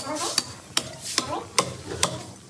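A meat cleaver chopping through goat ribs on a wooden chopping block: about five sharp strikes, one every 0.4 s or so, in a steady rhythm.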